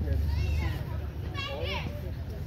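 High-pitched children's voices calling out in two short bursts, one about half a second in and one about a second and a half in, over a low steady rumble.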